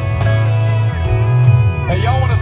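Live country band playing through a concert PA, with guitar over a steady bass line, heard from the crowd.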